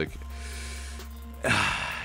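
A man breathing in audibly through his mouth in a pause between phrases, ending in a short, sharper and louder inhale about one and a half seconds in.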